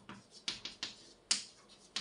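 Chalk writing on a blackboard: a run of sharp, irregular taps as each stroke starts, with short scratchy scrapes between them.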